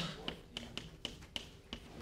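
Chalk tapping and scratching on a blackboard as short letters are written, a quick run of sharp taps about five a second.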